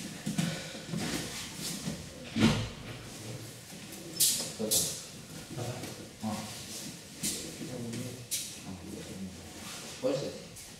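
Judo groundwork on a tatami mat: one dull thump of a body on the mat about two and a half seconds in, then several short brushing rustles of cotton judo jackets as the children grapple, over faint low voices in the hall.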